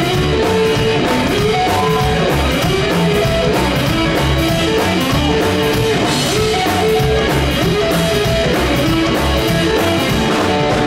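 Live rockabilly trio playing an instrumental passage, no singing: a hollow-body electric guitar carries the melody over slapped upright bass and a drum kit.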